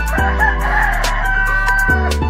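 A rooster crowing once, a single crow of about a second and a half, over background music with sustained tones and light ticks.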